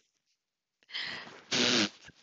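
Woman blowing her nose into a paper tissue: a breathy rush of air a little under a second in, then a short, louder blow with a low honk near the end.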